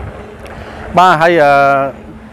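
A man speaking in Khmer: a short pause of low steady outdoor background noise, then about a second in his voice comes in with a long drawn-out vowel.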